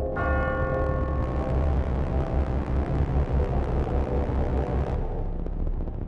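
A bell-like ringing tone, struck once just after the start and fading out over about a second and a half, over a low pulsing rumble. A hiss runs alongside and cuts off suddenly about five seconds in.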